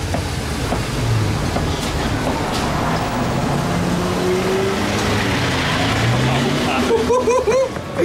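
A motor vehicle engine running, its note rising slowly as it passes, over steady street noise; a man laughs near the end.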